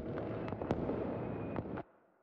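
Crackling noise with scattered sharp pops, left at the tail of a recorded song after its last chord fades, cutting off suddenly just before the end.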